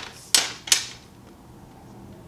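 A paintbrush scrubbing in a pan of handmade metallic watercolour in a tin palette, picking up paint: two short scratchy strokes in the first second, then only faint room sound.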